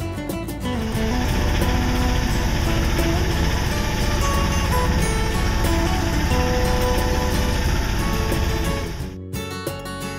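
Acoustic guitar music gives way within the first second to the loud, steady low running of the sailboat's auxiliary engine while motoring. The engine sound cuts off suddenly about nine seconds in, and the guitar music comes back.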